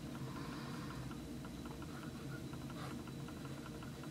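Faint scratching of a Nemosine fountain pen's stub nib writing on paper, a run of short light scratches as the letters are formed. It sounds like nib feedback, though the nib writes smoothly.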